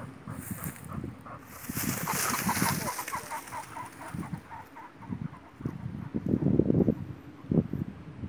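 A pheasant flushing from cover: a rush of wingbeats and a fast run of repeated cackling calls lasting about two seconds, followed later by low rumbling and bumps of rustling and handling noise.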